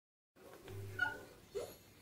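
Cartoon soundtrack playing from a TV speaker: a few short steady tones, then a brief rising sound about one and a half seconds in.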